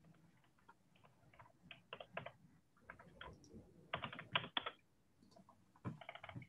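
Faint, irregular typing on a computer keyboard, with bunches of key clicks about two seconds in and again around four seconds in.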